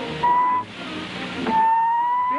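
Whistle tones from a comedy sound effect: one short whistle, then from about halfway through a longer whistle rising slightly in pitch.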